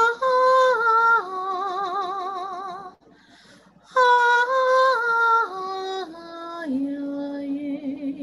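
A woman singing a Tao Song solo, without accompaniment: held notes with vibrato that step down in pitch. There are two descending phrases, with a short breath about three seconds in.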